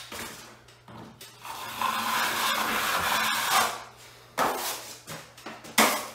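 A 14-inch steel drywall taping knife drawn across wet joint compound on a ceiling in one long scraping stroke, followed by two sharp knocks of the knife against the metal mud pan.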